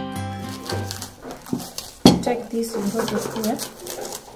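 Plucked-string background music dies away in the first second. About two seconds in, a sharp knock is followed by a person's voice with a wavering pitch.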